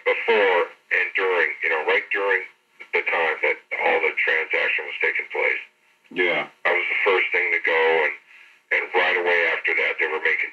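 A man talking: only speech, with short pauses.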